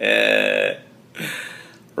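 A man laughing. His voice gives one long, drawn-out sound on a steady pitch, then a shorter one about a second later.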